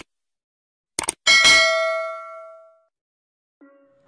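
Subscribe-button animation sound effect: a quick double click about a second in, then a single bright bell ding that rings out and fades over about a second and a half.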